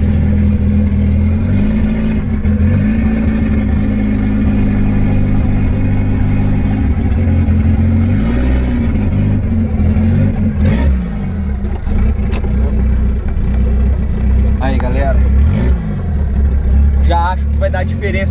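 VW Gol's engine heard from inside the cabin as the car pulls away and is driven, its revs rising and falling several times.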